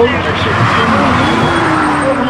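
Voices talking at a roadside, with the noise of a road vehicle underneath.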